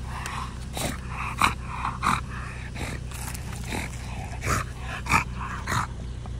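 Micro exotic bully puppy chewing a rubber ring toy, making short dog noises in irregular bursts about every half second to second.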